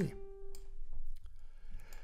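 Single piano note from the FL Keys plugin, a G, previewed as its key on the piano roll is clicked; it sounds steadily for just under a second and dies away. A few faint clicks follow.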